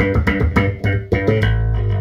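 Electric bass played through a Mu-Tron III envelope filter in low-pass mode, the effect switched on: a quick run of picked notes, each opening the filter, ending on a held low note about one and a half seconds in.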